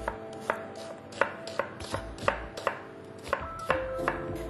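Chef's knife chopping an onion into small dice on a cutting board, the blade striking the board in a steady series, about two to three cuts a second.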